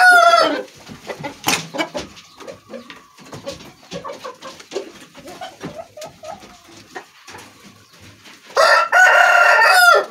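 Rooster crowing: the loud tail of one crow at the start, then a full crow of about a second and a half near the end, each closing on a falling note. Soft clucks come between the two crows.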